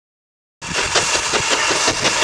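Steam-train sound effect played back heavily sped up, its pitch raised and its tempo made much faster, so the chuffing becomes a fast, high 'chicka chicka' rhythm. It starts suddenly about half a second in, out of silence.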